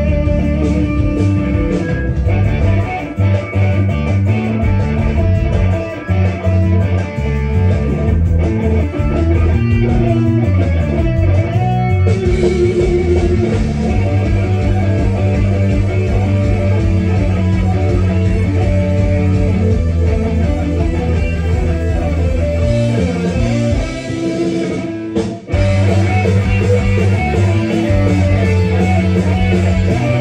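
Electric guitar played live, an instrumental rock piece with no singing. The music breaks off briefly about 25 seconds in, then carries on.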